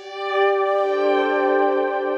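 Roland D-50 digital synthesizer playing a sustained chord, with a lower note joining about two-thirds of a second in.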